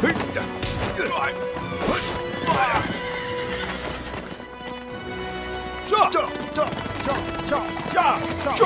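Horses neighing several times, with galloping hoofbeats, over dramatic background music on a film soundtrack. The neighs come in the first few seconds and again about six seconds in.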